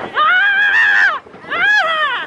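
Roller-coaster riders screaming with excitement: two long, high-pitched cries, each rising then falling in pitch, the second shorter.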